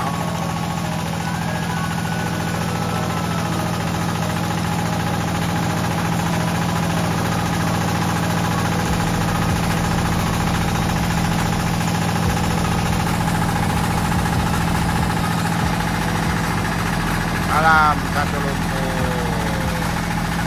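Small stationary diesel engine running steadily, driving a Parker hydraulic pump on a drilling rig through a spinning shaft coupling, with an even hum.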